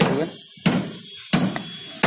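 A hammer lightly tapping the end of a 25 mm steel rebar to drive it into a drilled hole in a concrete column filled with Fischer chemical anchor adhesive. Three sharp strikes come about two-thirds of a second apart, each with a short ringing tail.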